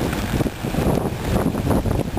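Wind buffeting the camera's microphone: an uneven low rumble that swells and dips in gusts.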